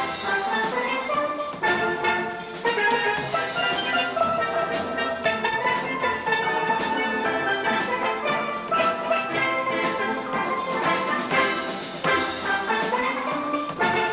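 A steel band of many steel pans playing a soca tune together, mallets striking quick, ringing melodic notes in a busy, continuous rhythm.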